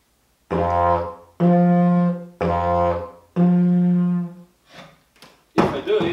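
Wooden, mostly cylindrical didgeridoo blown in four short notes that alternate the low basic drone with the toot, an overblown note an octave above it: drone, toot, drone, toot. On this near-cylindrical pipe the gap between drone and toot is an octave.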